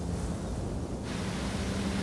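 Steady low ambient drone with a rumble beneath it. About a second in, a wind-like hiss enters abruptly across the high range.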